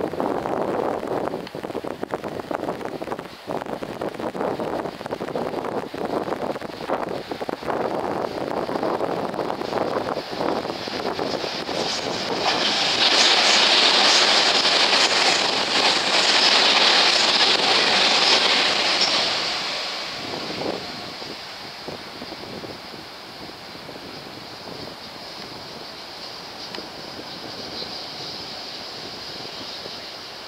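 Tobu 100 series Spacia limited-express electric train passing a station at speed. It clatters over the steel truss bridge as it approaches, gets loud with a high wheel-on-rail hiss as the cars run past for about seven seconds, then fades away about twenty seconds in, leaving a steady hiss.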